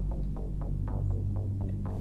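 Background music: a low, steady electronic drone with faint, evenly spaced ticks over it.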